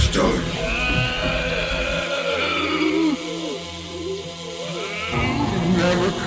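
Song outro after the beat cuts out: a voice with a wavering, gliding pitch over a low held tone, thinning out in the middle and filling back in near the end.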